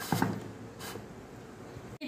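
Pressure cooker lid being closed onto the cooker: a light knock just after the start, then faint clicks and scraping as it is seated.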